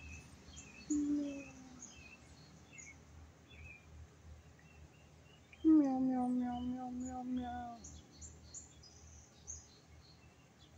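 Small birds chirping on and off throughout, with a man humming: a short 'mm' about a second in and a longer held, slightly falling 'mmm' of about two seconds near the middle.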